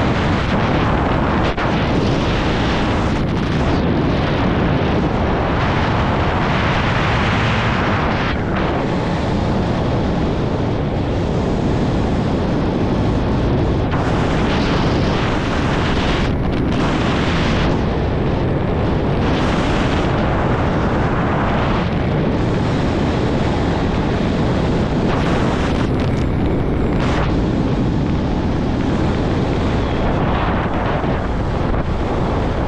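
Wind rushing and buffeting over the camera microphone during a descent under an open parachute. It is a steady, loud rush whose upper hiss briefly thins and returns every few seconds.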